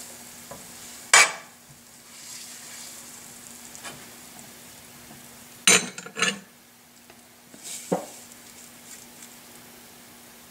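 Butter melting in oil in a stainless steel pan, sizzling faintly and steadily as it heats. A few sharp clicks and knocks of a metal spoon on the pan cut through: one about a second in, a quick cluster around six seconds and a softer one near eight seconds.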